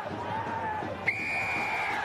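A rugby referee's whistle: one steady high blast of about a second, starting suddenly about halfway in, that stops play at a ruck. The commentator puts it down to the ball carrier holding on to the ball. Players shout before it.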